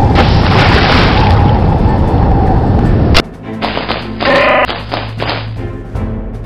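Dense, loud storm sound effects of wind and crashing sea, cut off about three seconds in by a sharp boom. Afterwards a quieter steady low hum and music-like tones carry on.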